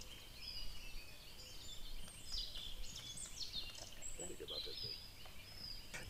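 Faint forest birdsong: several small birds chirping and whistling in short, high phrases over a quiet woodland background.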